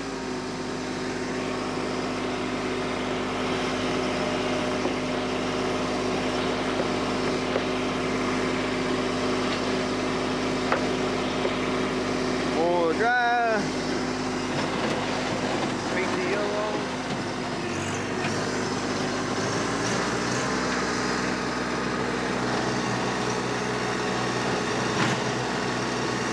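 TYM T264 compact tractor's diesel engine running steadily under load while driving a 5-foot PTO rotary tiller through the soil. The engine note shifts lower about two-thirds of the way through.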